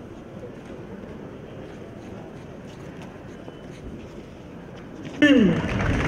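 Steady outdoor background noise of a town square, a low murmur with no distinct events. About five seconds in, a loud man's voice suddenly starts, its pitch falling at first.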